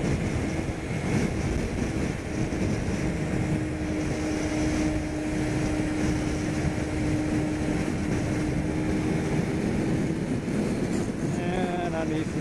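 Kawasaki Ninja 250R parallel-twin motorcycle cruising at steady highway speed: wind rushing over the microphone with a steady engine hum underneath.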